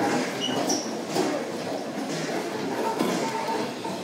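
Steady background noise of a large shop floor, an even hiss and hum with no clear single source.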